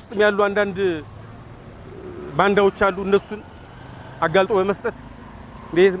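A man speaking in short spells, with the steady noise of street traffic in the gaps between his phrases.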